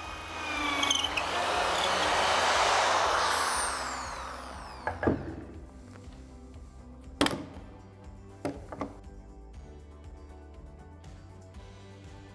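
Electric drill with an auger bit boring into a wooden batten: a swell of cutting noise lasting about four seconds, with the motor whine falling in pitch as it slows. A few sharp knocks follow, over a background music bed.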